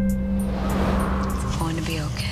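A car going by: a rising and fading whoosh that peaks about a second in, over a steady low drone of trailer music.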